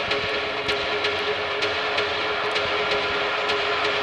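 Beatless stretch of an electronic dance track: a steady hissing noise wash under one held tone, with scattered sharp clicks.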